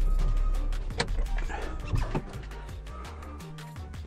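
Background music over the low rumble of a car driving, heard inside the cabin; the rumble fades away over the first couple of seconds as the car slows down.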